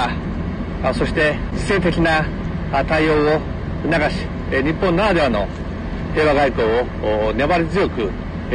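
A man speaking in Japanese, giving a formal statement in a steady, measured voice, over a continuous low hum like an idling engine.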